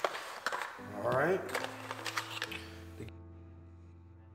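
A few light clicks of a small cardboard box and plastic kit parts being handled, a short voice sound about a second in, then a single held musical note that slowly fades, its upper range cut off abruptly in the last second.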